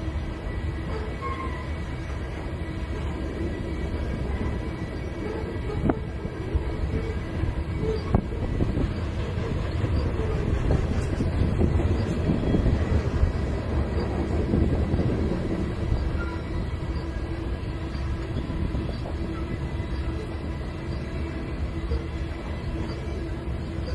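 Loaded freight train of covered hopper cars rolling past: a steady rumble of steel wheels on the rails, with a few sharper clacks. Faint thin squeal tones from the wheels sit over the rumble.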